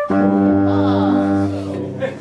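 A brass and woodwind band playing a loud held chord together, which stops after about a second and a half.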